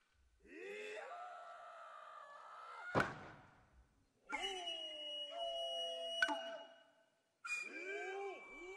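Traditional Japanese hand-drum (tsuzumi) players' drawn-out vocal calls (kakegoe), three long cries that slide in pitch, each broken off by a sharp ringing tsuzumi stroke, the strokes about three seconds in and again near six seconds. A thin high steady tone sounds behind the later calls.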